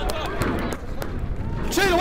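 Men's voices calling out across an outdoor football pitch, with a few short sharp knocks in the first second and a clearer shout near the end.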